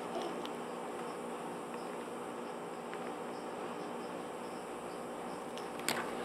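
Steady outdoor background with insects chirping faintly at an even pace, and a low steady hum under it. A single sharp click comes near the end.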